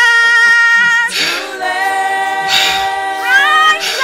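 Unaccompanied female voices singing long held notes in harmony, a high voice joined by a lower one, with two short hisses between phrases.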